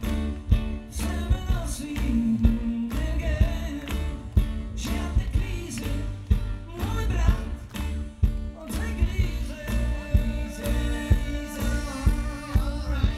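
A live pop-rock band playing: electric bass, keyboard and drums with a steady beat, and a man singing into a microphone over them.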